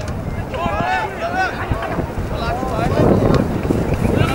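Wind rumbling on the microphone, with voices calling out across a soccer pitch during play.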